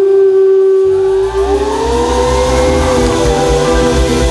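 Live pop band: a female singer holds one long note that slides up in pitch about a second and a half in, as the drums and bass come in under it about a second in.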